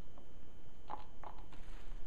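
A few soft taps and rubbing sounds from a hand on the cone of a Sundown Audio X-15 15-inch subwoofer, over a low steady background rumble.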